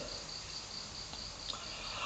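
Faint background noise with a thin, steady high-pitched tone running through it.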